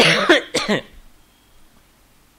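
A man coughing twice in quick succession, the first cough starting sharply.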